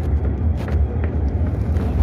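A field recording with a steady low rumble and irregular brief crunching or scraping noises every half second or so.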